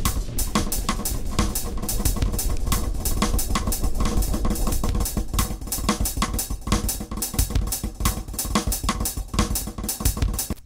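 Electronic drum-machine beat (kick, snare and cymbal) fed through a multi-tap tape-style delay, each hit followed by a dense trail of repeating echoes.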